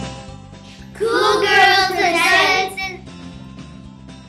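A child's voice singing a short drawn-out phrase over background music, from about one second in to about three seconds in.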